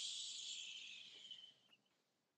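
A man's long, slow exhale pushed out as a hiss through the lips, fading out about one and a half seconds in.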